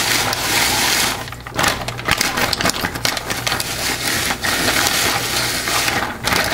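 Silicone spatula stirring frozen coffee cubes in a polypropylene plastic pitcher, the ice chunks knocking and scraping against the plastic in a quick, irregular rattle, with a short lull about a second in. The lye being stirred in is melting the frozen coffee.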